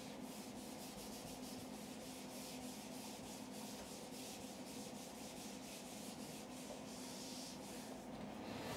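Felt whiteboard eraser wiping dry-erase marker off a whiteboard: a fast run of short back-and-forth rubbing strokes, each a faint hiss.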